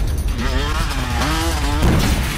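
A car engine revving, its pitch rising and falling several times, over a deep steady rumble.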